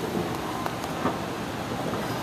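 Steady, even noise of a moving escalator and the mall around it, with a few faint clicks.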